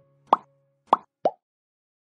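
Three short pop sound effects from an animated subscribe-button overlay. The second comes about half a second after the first, and the third follows close behind it, slightly lower in pitch.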